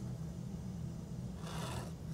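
A pen drawn along a ruler across paper, a faint scratch that builds in the second half, over a steady low hum.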